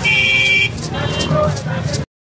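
A brief, loud, high-pitched horn blast, followed about a second later by a fainter, shorter one, over the voices of a crowd.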